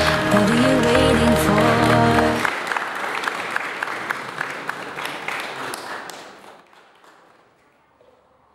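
Background music cuts off about two and a half seconds in. A crowd applauding is left, and the clapping fades away to near silence.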